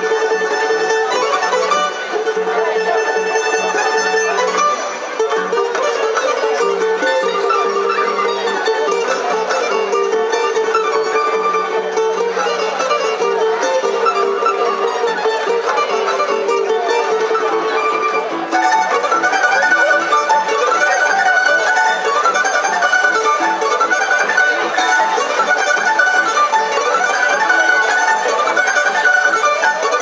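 Tamburica orchestra playing an instrumental piece: plucked tamburicas carrying the melody over a double bass (begeš). About two-thirds of the way through the music grows louder and the melody moves higher.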